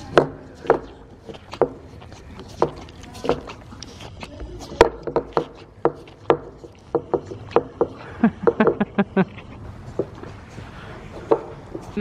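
Horse licking and gnawing at a lick treat in a small plastic tub, its teeth and lips knocking and scraping on the tub in irregular sharp clicks, with a quick flurry of them about eight seconds in.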